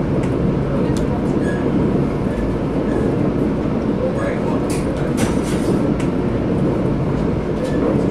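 Steady rumble and rattle of a moving passenger train, heard from inside the car, with a few faint clicks.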